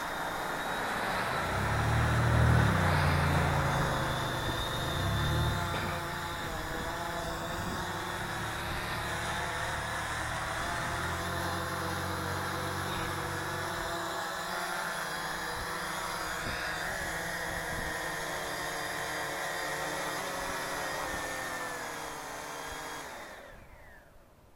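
UpAir One quadcopter's propellers whining steadily as it descends and sets down, with bursts of low rumble in the first few seconds and again around the middle. Near the end the whine falls in pitch as the motors spin down, then stops.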